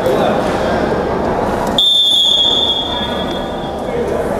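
Indoor arena crowd murmur. Just under two seconds in it cuts abruptly to a single long, high referee's whistle blast, which fades away over about a second.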